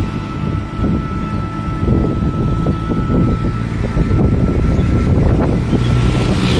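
Moving open-sided passenger vehicle heard from its seat: continuous low road and body rumble with wind buffeting the microphone, and a thin steady high whine throughout.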